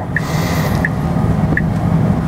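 Cybertruck cabin road and tyre noise while driving, with a short high tick about every three-quarters of a second from the turn-signal indicator as the truck turns.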